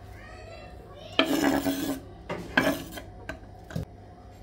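Wooden chopping board scraping and knocking against a glazed bowl as grated potato is pushed off it into the bowl: two rasping scrapes, each under a second, then two light knocks near the end.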